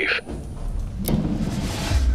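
Trailer sound design: a low rumble, then a sharp hit about a second in followed by a swelling whoosh over a rough, low drone.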